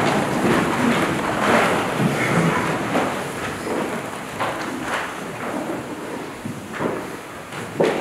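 Congregation sitting down in church pews after the Gospel: a rustling, shuffling noise of clothing, feet and benches, with a few knocks, that dies away gradually.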